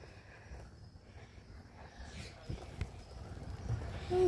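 Quiet movement noise from a handheld phone being carried along: a low rumble with a few soft knocks in the second half.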